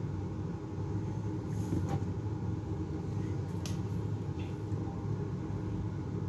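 Steady low room hum, with three faint light clicks about two, three and a half and four and a half seconds in.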